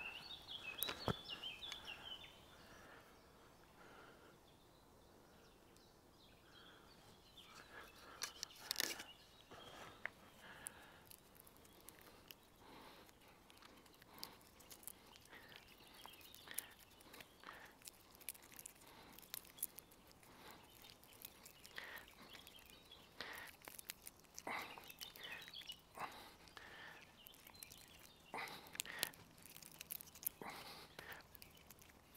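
Faint, irregular crackles and clicks of wood fibres breaking as a green branch is twisted into a rope, with a few seconds of near quiet early on. Birds chirp at the start and again near the end.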